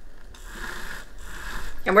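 Faint, steady trickle of coffee draining from a tipped glass coffee carafe, with light handling of the glass.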